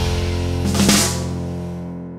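Intro jingle music: a rock-style sting with drum kit, its final chord held and struck again with a drum hit just before one second in, then dying away.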